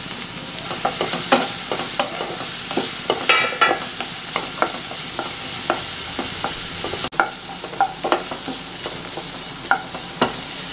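Diced carrots and green capsicum sizzling in oil in a non-stick pan while a spatula stirs them, scraping and tapping against the pan in quick irregular strokes. A short squeaky scrape comes about three seconds in, and the sound breaks off for an instant about seven seconds in.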